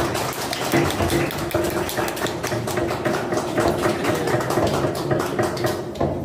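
Several wooden mallets tapping steel chisels into a slab of Bishop wood (茄苳), making many quick, overlapping, uneven knocks.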